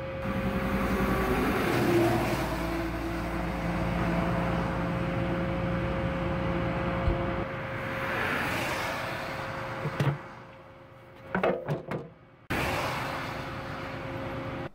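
A vehicle engine idling steadily, with road traffic passing: a swell of tyre and engine noise about eight seconds in, then a sharp knock and a few short bumps near the end.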